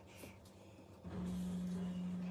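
A steady low hum, one constant pitch, switches on suddenly about a second in after a near-quiet start.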